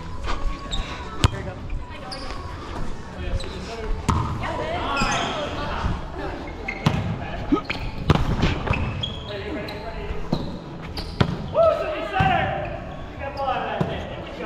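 Volleyball rally in a gym: a string of sharp smacks as the ball is struck by hands and forearms every couple of seconds, each echoing in the hall.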